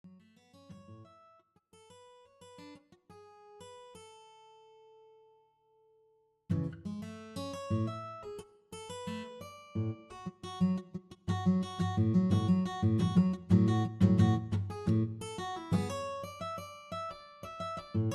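Guitar music: sparse, soft plucked notes and one held note, then after a brief pause a fuller, louder passage of plucked and strummed chords over low bass notes.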